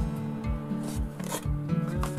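Acoustic guitar music plays throughout, over a scraping rattle of small knobbly Madeira vine bulbils sliding out of a bamboo basket onto a white tray, loudest just past the middle.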